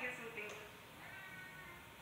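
A high-pitched cry: a short call at the start, then one held steady for most of a second.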